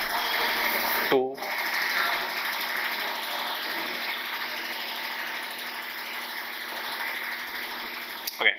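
Marker pen scratching across a whiteboard as an expression is written out, a continuous run of writing strokes.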